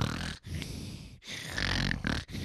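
Pigs grunting and snorting in a run of rough, low bursts, four or five in two seconds.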